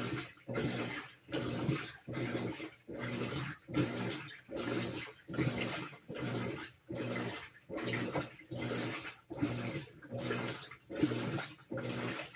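Whirlpool WTW4816 top-load washer agitating its load in the rinse water, its drive motor humming in even back-and-forth strokes of sloshing water, about three strokes every two seconds.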